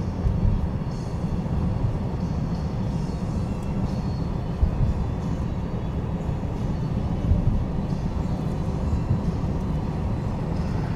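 A car driving along, heard from inside the cabin: a steady low rumble of road and wind noise.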